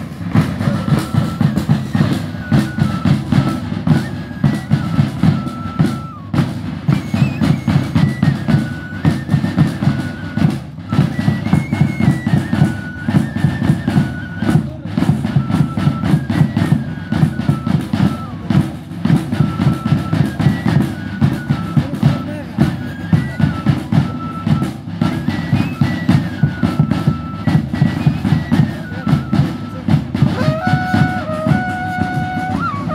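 An Andean banda típica playing a tune: high flutes carry a melody that steps up and down, over a steady, continuous beat from large bass drums and another drum.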